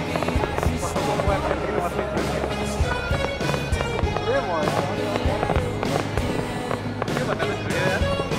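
A fireworks display, with shells bursting in irregular bangs throughout, over loud music with voices mixed in.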